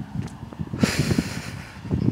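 A man breathing out heavily in one sigh, about a second long, in the middle of a pause in his talk.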